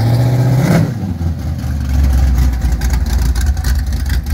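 Lifted Jeep CJ's engine and exhaust rumbling loudly as it drives slowly past. There is a short rev about half a second in, then a deeper, lower rumble as it pulls away.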